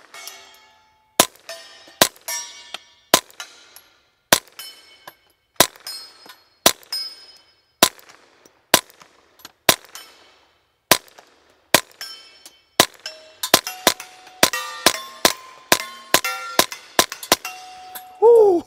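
Suppressed Ruger PC Charger 9mm pistol firing 9mm suppressor ammunition, about one shot a second at first, then a faster string of shots over the last five seconds. Many shots are followed by the ring of steel targets being hit.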